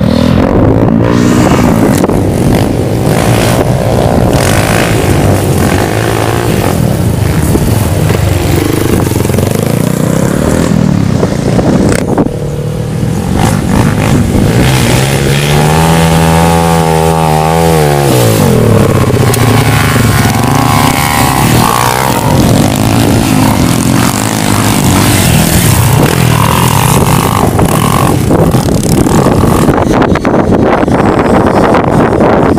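Off-road dirt bike engines running loud on a muddy trail, their pitch wavering as the throttle is worked. About halfway through, one engine revs up, holds, and drops back down.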